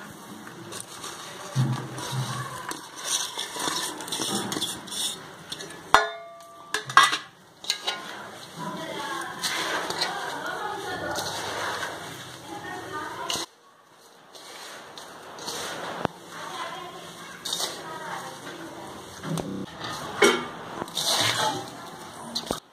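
Rustling and light scraping of hands working crumbly ground wheat and jaggery against a steel pan, under indistinct background voices.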